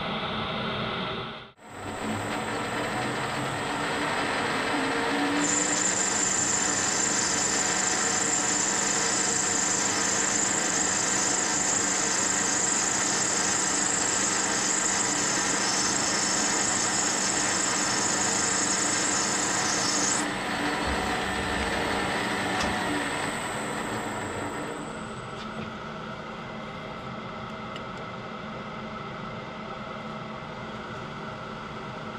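Metal lathe running, turning brass bar stock in a four-jaw chuck, with the cutting tool taking slices off to bring a model steam-engine piston down to diameter. A high whine rides on top of the machine through much of the middle, and the sound drops quieter near the end.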